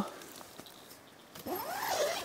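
Small nylon tent's door zipper being pulled along its track, a short rasp that rises and falls in pitch, starting about a second and a half in, after a quiet first second.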